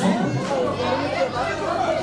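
Several people talking over one another: a dense, steady chatter of voices.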